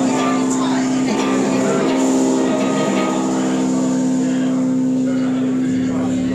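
Amplified electric guitar sustaining a held chord through the amp as a steady drone, with no drumbeat or rhythm. A deeper low note joins near the end.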